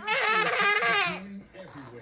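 Young child laughing once, for about a second, while swinging.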